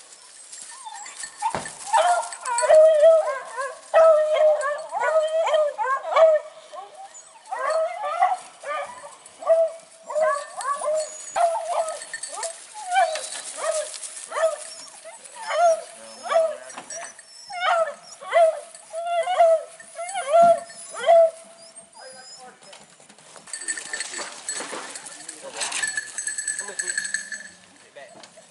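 Rabbit-hunting beagles barking and yelping in a quick, steady run of high calls, about two a second, that stop a little after twenty seconds in. A steady high ringing follows near the end.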